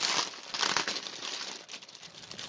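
Clear plastic packaging crinkling as it is handled and pulled about, busiest in the first second and dying down near the end.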